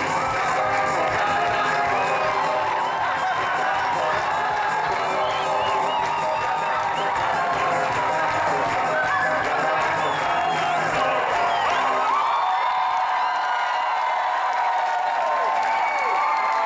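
Live concert music from a stage, heard from within a large outdoor crowd, with cheering mixed in. About twelve seconds in the low accompaniment drops out, leaving the higher sustained tones and voices.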